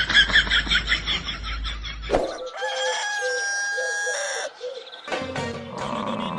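A rooster crowing as a cartoon sound effect: one long, held cock-a-doodle-doo starting about two seconds in and lasting about two seconds, marking early morning. Before it, a fast run of short high-pitched sounds.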